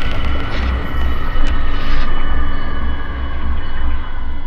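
Electronic intro sound design for an animated logo: a loud, deep pulsing rumble like a passing aircraft, with sustained high tones above it and a couple of faint clicks about a second and a half in.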